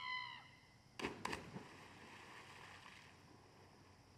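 A brief high-pitched shout, then two splashes close together about a second in as two children hit the lake water, with spray pattering down for a couple of seconds after.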